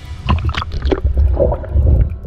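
Water splashing and gurgling around a crab trap as it is dropped into the water with the camera inside it, the camera going under the surface near the end.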